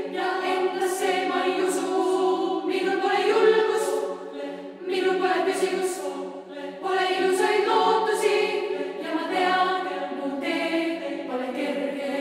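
Female choir singing in several parts, in phrases that dip briefly in loudness about five and six and a half seconds in, with the singers' s-sounds heard as short hisses.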